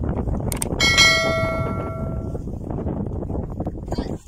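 A bell struck once about a second in, ringing with several clear tones at once and fading out over about a second and a half, over a steady low rumble.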